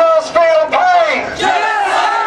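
Crowd of protesters chanting and shouting slogans together, many voices overlapping.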